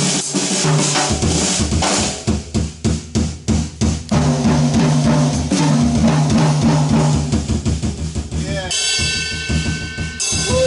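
Free jazz improvisation: a drum kit played busily with many snare and bass drum strokes, under a double bass and saxophone. A held low note sounds through the middle, and near the end the sound thickens into a denser ringing texture.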